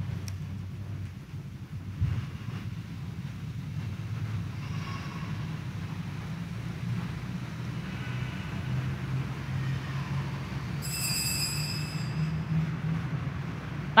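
Church room ambience: a steady low hum with faint, indistinct voices in the background. There is a soft knock about two seconds in and a brief high-pitched ringing near the end.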